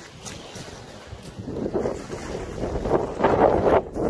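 Wind buffeting the microphone over small waves washing onto a seaweed-covered shingle shore, the noise growing louder from about halfway through.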